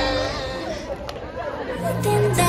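People in a crowd chattering in the short gap between songs, as one pop song fades out. A new pop song starts from the speaker near the end.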